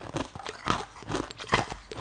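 Crunching of hard frozen ice being bitten and chewed close to the microphone: a series of four or five sharp crunches, the loudest about two-thirds of a second and a second and a half in.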